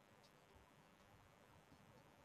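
Near silence: faint, even background noise with no distinct event.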